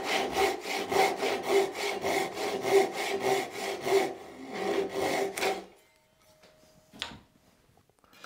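Hand saw cutting an angled line through a wooden board clamped in a vise, in quick, even back-and-forth strokes about four a second that stop a little under six seconds in. A single light knock follows about a second later.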